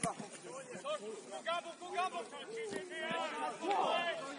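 Several voices shouting and calling across an outdoor football pitch, distant and indistinct. There is a single sharp knock right at the start.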